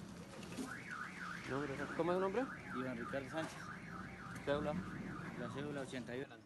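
Car alarm going off: an electronic siren tone sweeping rapidly up and down, about three times a second, starting just under a second in.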